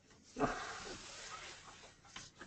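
A man's long breathy exhale, a sigh, starting about half a second in and fading away over about a second and a half.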